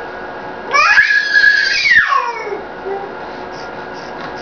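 Baby squealing in vocal play: one loud high-pitched shriek starting about a second in, held level for about a second, then gliding down in pitch and trailing off.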